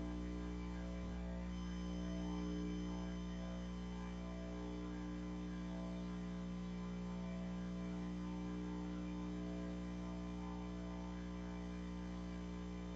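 Steady electrical mains hum with many buzzing overtones, unchanging throughout.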